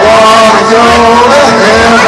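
A man singing loudly into a karaoke microphone over a country backing track, holding long, wavering notes.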